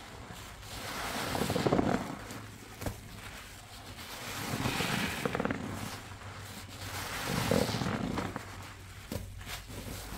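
A soapy sponge squeezed and kneaded in thick suds with gloved hands: wet squelching that swells and fades in three long squeezes, with the foam crackling.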